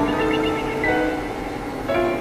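Synthesizer drone music: sustained chords of held tones that shift every half second or so, with a new chord struck at the start and another near the end, and small chirping blips above.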